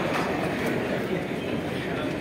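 Audience applause in a hall, dying away.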